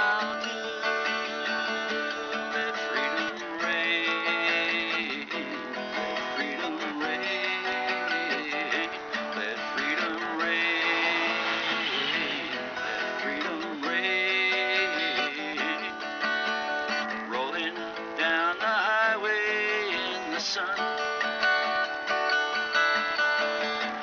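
Instrumental break in a folk-rock song: strummed acoustic guitar chords under a lead melody that bends in pitch, with no vocals.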